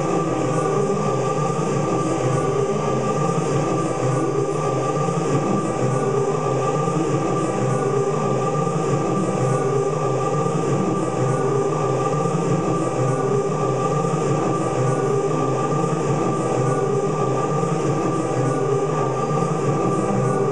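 Dense, steady drone of layered, live-looped voices, with many held tones stacked over a breathy, rushing texture and no beat or break.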